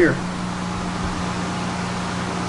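A steady low machine hum, like a small electric motor running, with a faint low thump about a second in.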